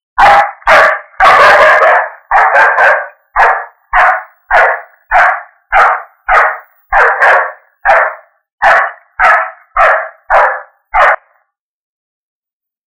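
A dog barking repeatedly and loudly, about seventeen barks at a steady pace of roughly one every half second or so. The barks stop about a second before the end.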